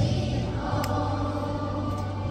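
Large children's choir singing in unison, holding long sustained notes.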